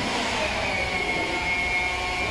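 Automatic cable coiling and labeling machine running: a steady mechanical noise with a constant high-pitched whine.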